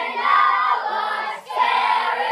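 Choir of girls singing together, one sung phrase ending about a second and a half in and the next starting straight after.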